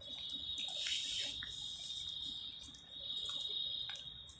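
A steady high-pitched tone holding one pitch throughout, dipping in level around the middle, with light handling clicks.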